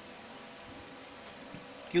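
Faint steady buzzing hum under low room noise, with the soft scratch of a marker writing on a whiteboard.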